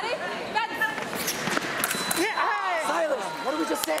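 Several voices shouting and yelling over one another, swooping up and down in pitch, with a few sharp clicks about a second in and again near the end.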